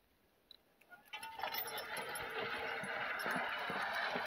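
Harness hardware and sled chains jingling and clinking as a draft horse starts pulling a sled through snow, beginning about a second in and slowly getting louder.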